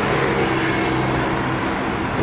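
A car driving past on a city street, its engine running steadily over traffic noise.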